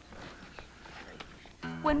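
Faint outdoor background with a couple of soft clicks, then a man's narrating voice begins near the end as music comes in with a steady low beat.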